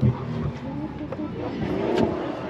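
A car engine running and accelerating, its pitch rising through the second half, with a few voices over it.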